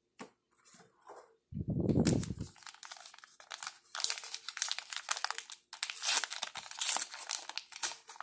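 Foil trading-card pack being torn open and its wrapper crinkled by hand, a run of sharp crackles coming in clusters. A short low thud comes about a second and a half in.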